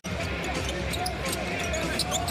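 Basketball game sound in an arena: a ball being dribbled on the hardwood court over steady crowd noise, starting abruptly.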